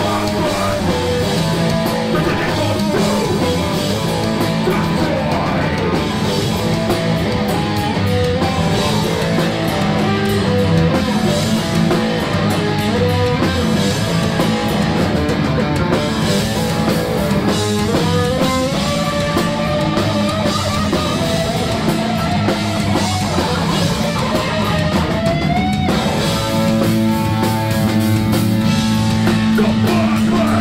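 Punk band playing live: electric guitar, bass and a drum kit, with a vocalist singing into the microphone.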